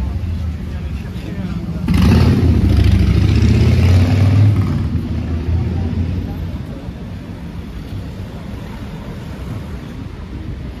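A motor vehicle passing close by on a city street, loud for a few seconds starting about two seconds in, then fading away, over the steady hubbub of street traffic and passers-by.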